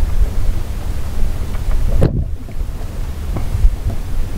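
Wind buffeting the camera microphone: a steady, uneven low rumble.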